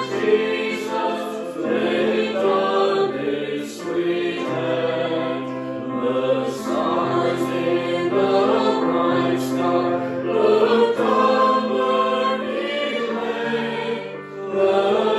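Small mixed choir of men and women singing a hymn to electric keyboard accompaniment, in long held notes that change every second or two over a sustained bass line.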